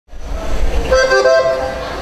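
Button accordion holding reedy, horn-like notes that change pitch about a second in, over a low rumble of room noise.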